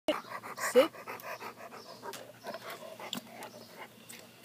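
Yellow Labrador retriever panting quickly and evenly, about six breaths a second.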